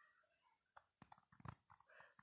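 Near silence: room tone, with a few faint, soft clicks in the second half.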